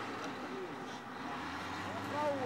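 Bulldozer's diesel engine running steadily, with voices faintly in the background.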